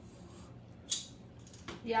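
A metal garlic press being handled and loaded with a garlic clove: one sharp, light click about a second in and a fainter one near the end, in an otherwise quiet room.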